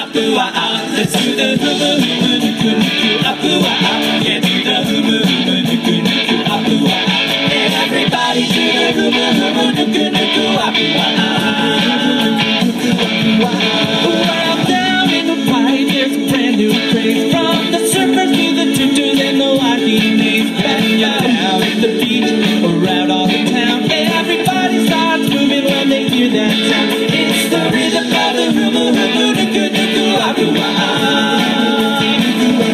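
A large ensemble of ukuleles strumming together in a steady, upbeat rhythm, with voices singing along at times.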